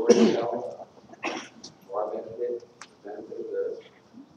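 A man's voice speaking in short phrases with pauses between them.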